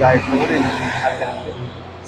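A road vehicle passing by, its noise swelling and then fading over the first second and a half.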